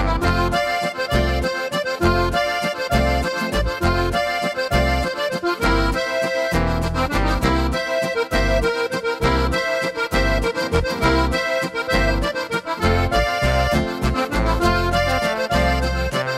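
Korg Pa5X Musikant arranger keyboard playing an Oberkrainer waltz style: an accordion voice plays the melody over the style's accompaniment, with regular bass notes and bass runs in waltz time.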